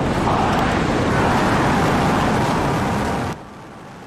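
Starship's Super Heavy booster firing its 33 Raptor engines at liftoff: a loud, steady rocket-engine noise that cuts off suddenly a little past three seconds in, leaving a much quieter hiss.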